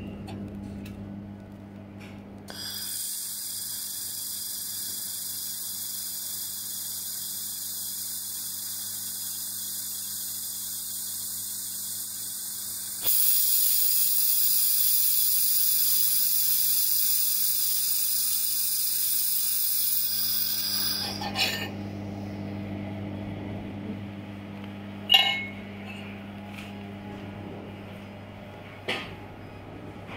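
Handheld fiber laser welder running a seam on steel plate: a steady high hiss and whine from the welding head starts a few seconds in, gets louder about halfway, and cuts off about two-thirds of the way through. A steady low electrical hum from the welding machine runs underneath, and a few short clicks follow the weld.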